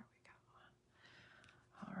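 Near silence: room tone with a faint soft hiss.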